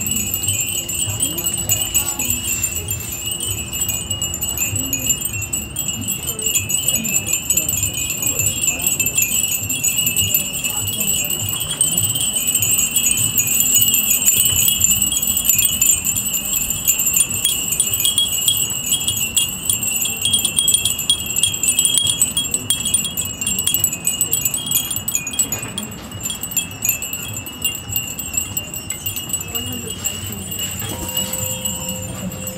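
A steady, shrill chorus of cicadas, buzzing without a break and with a fast flutter in the sound.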